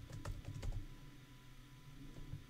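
Computer keyboard keys being typed while entering a password: a quick run of several sharp key taps in the first second, then a few fainter ones.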